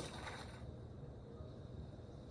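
Faint, steady low rumble of a bowling ball rolling down the lane, heard through a TV speaker, with a thin steady high whine underneath.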